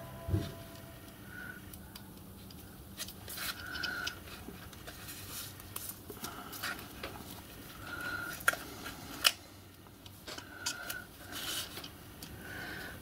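Quiet handling sounds as a ball bearing is slipped onto an e-bike hub motor's shaft and wires are worked under it by hand: a thump just after the start, then scattered light clicks and brief rustles.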